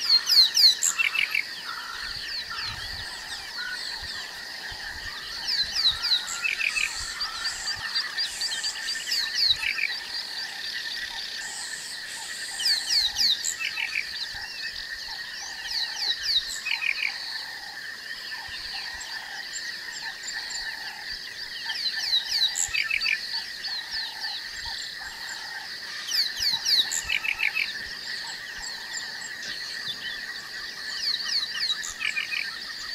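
Wild bush chorus: bursts of quick, high, falling bird whistles every three or four seconds over a steady high insect drone, with a short lower call repeated at an even pace.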